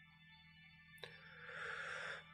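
Near silence, then a small mouth click about a second in and a faint breath drawn in before speaking.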